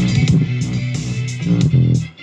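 An instrumental 90s-style boom bap hip-hop beat playing, with a heavy bass line under repeated drum hits.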